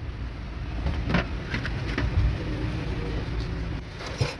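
Low steady motor rumble with a few light clicks and knocks about a second or two in.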